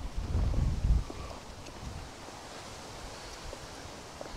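Wind buffeting the microphone, low rumbling gusts in the first second, then easing to a light, steady rush of wind noise.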